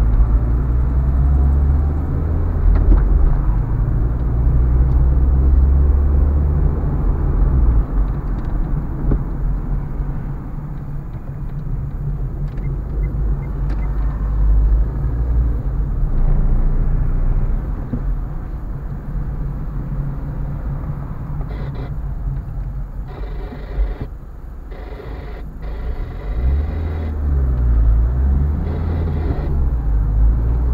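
Car driving along a road: a steady low rumble of engine and road noise. Several short bursts of brighter, hissier noise come and go near the end.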